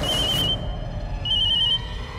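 Mobile phone ringing with a warbling electronic trill, in short bursts about a second apart.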